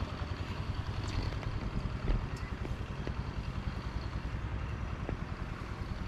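Wind buffeting the camera microphone: a steady, fluttering low rumble with a few faint ticks.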